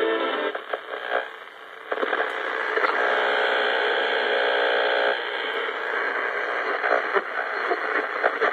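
Packard Bell AM portable radio being tuned across the band: static and hiss between stations with brief snatches of broadcasts. A steady held tone sounds for about two seconds in the middle.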